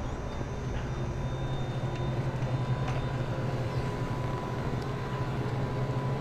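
A steady low mechanical hum with a faint thin tone above it over even background noise.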